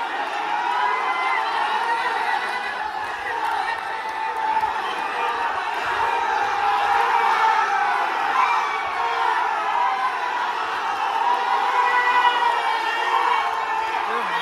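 A large crowd of men shouting and cheering together, a steady din of many overlapping voices urging on a tug-of-war.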